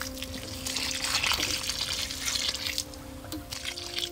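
Thin stream of liquid pouring from a plastic watering can's spout and splashing onto loose soil, strongest in the first few seconds and easing off near the end.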